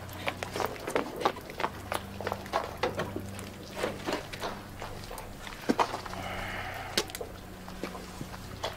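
Footsteps and irregular scattered knocks on a wet street, over a steady low hum.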